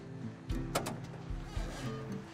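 A car trunk latch being released, with a few sharp clicks about half a second to a second in, as the trunk lid is opened, over background music.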